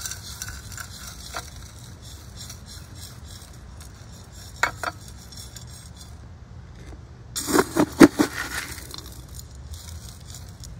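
Coarse granular bonsai soil poured from a metal scoop into a bonsai pot, the grains rattling and clinking against the pot and scoop. A few sharp clicks come midway, and a louder run of clinks about three-quarters of the way through as a bigger scoopful lands.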